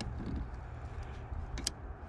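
Two sharp little clicks near the end as multitool pliers grip and work a plastic automotive relay out of its fuse-box socket, over a steady low background rumble.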